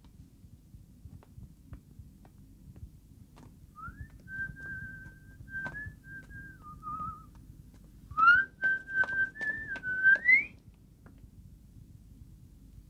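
A person whistling two short phrases of a tune, the second louder and ending on a rising note.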